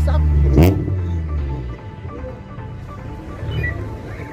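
A car driving slowly past close by, its low rumble fading away after about a second and a half.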